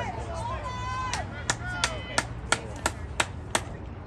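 Rhythmic hand clapping, eight sharp claps at about three a second, starting about a second in and stopping just before the end, with voices calling out faintly around it.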